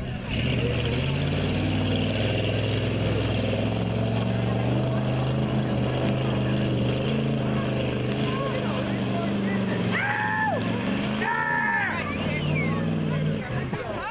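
Lifted, mud-covered SUV's engine running hard at steady high revs as it churns through a mud pit. Shouting voices come in twice, about ten and eleven seconds in.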